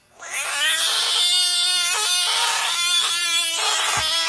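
Budgett's frog giving its defensive scream when poked: a loud, long wailing cry that sounds like a cat yowling, starting just after the finger touches it and running on without a pause.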